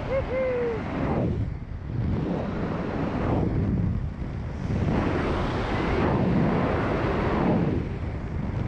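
Wind buffeting the camera microphone under an open parachute canopy, a rushing noise that swells and eases every couple of seconds.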